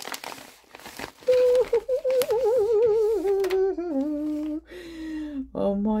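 Tissue paper rustles briefly, then a woman gives a long, excited, wavering hum that trembles and slides down in pitch over several seconds.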